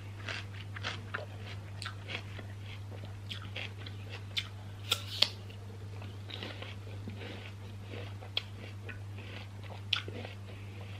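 Close-up chewing of crisp raw apple slices: a continuous run of wet, irregular crunches, with a few sharper bites about four to five seconds in and again near the end.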